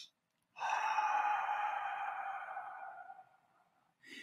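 A man's long, slow exhale through the mouth, starting about half a second in and fading away over nearly three seconds. It is the out-breath of a deep relaxation breath, drawn in through the nose and let out through the mouth.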